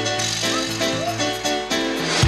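Live pop band playing a Latin-rhythm dance song: short repeated chords in a steady rhythm over a held low note, with light percussion ticks.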